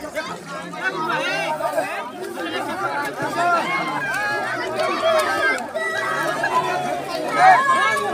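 Several people talking and calling out over one another, a steady babble of voices, with one voice rising louder near the end.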